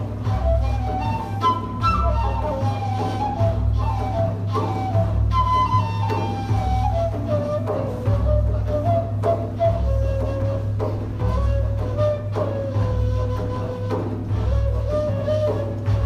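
Traditional Turkish Sufi music: a flute plays a melody of held notes in falling phrases over a steady low hand-drum beat, with an oud being plucked.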